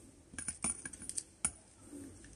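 A quick run of small, sharp clicks and ticks: thin iron petal wires being bent by hand where they sit in the blooming machine's plastic hub.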